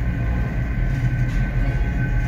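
CNC milling machine table traversing along the Y axis under a dial test indicator: a steady low rumble with a steady high whine from the axis drive.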